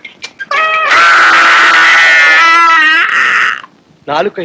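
A short cry, then a loud, drawn-out cry lasting about two seconds that wavers near its end and trails off in a breathy hiss.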